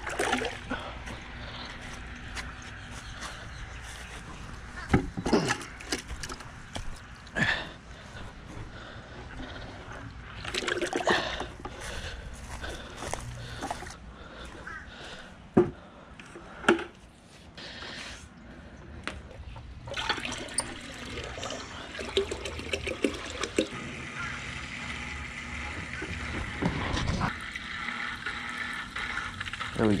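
Water splashing and trickling in a plastic bucket, broken by scattered sharp knocks of handling. By the end a hang-on-back aquarium filter is pouring a steady trickle into the bucket.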